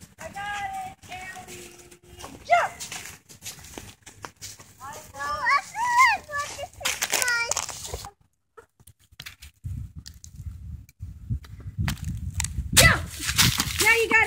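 Mostly a small child's voice: high-pitched calls and babble with no clear words, in several short bursts. After a short gap about eight seconds in comes a few seconds of low rumbling noise, then a voice again near the end.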